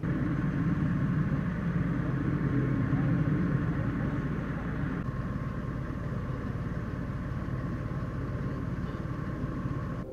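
Steady engine rumble from a running vehicle, a little louder for the first few seconds, with a faint steady whine.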